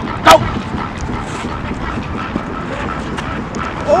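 A single sharp shout of "Go!" right at the start, calling the snap for a pass play, then steady outdoor background noise while the receiver runs his route.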